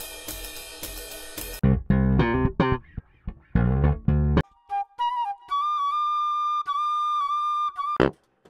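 GarageBand Apple Loops previews auditioned one after another in short bursts. First a bebop drum-kit fill, then about a second and a half in, a few choppy bass-groove phrases with gaps between them. From the middle on, held flute notes that step gently in pitch.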